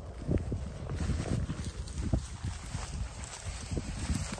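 Footsteps tramping through tall dry grass, with the stalks rustling and brushing at each step.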